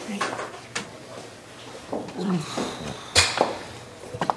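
Low, indistinct vocal sounds in a small room, with a few light clicks and one sharp knock about three seconds in.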